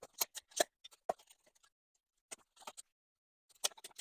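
Garden spade being driven into soil and through plant roots, giving a series of short, faint crunches and scrapes in several separate groups.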